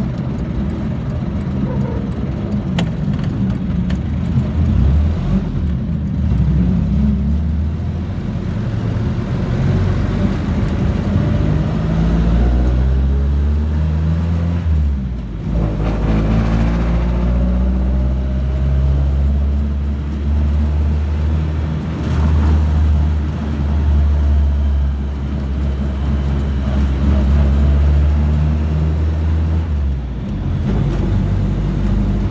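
Jeepney's diesel engine running, heard from inside the open cab while under way. About halfway through the engine note drops briefly, then climbs as it accelerates again.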